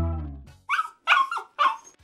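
Background music fades out, then a Labrador gives three short, high, falling whines, a dog whining for help while a cat lies in the dog bed.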